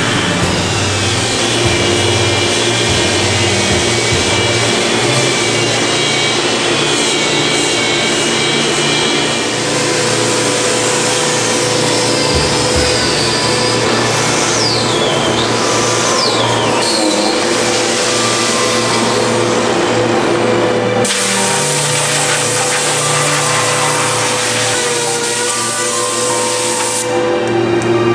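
Handheld electric disc sander, an angle-grinder type, running against a solid-wood slab tabletop as it sands the surface, under background music. The sound changes partway through, about three-quarters of the way in.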